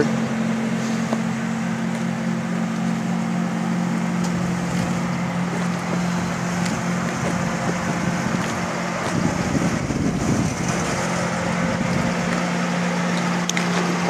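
A car engine idling steadily, a low even hum. About nine to eleven seconds in, a rougher rustle of noise rises over it.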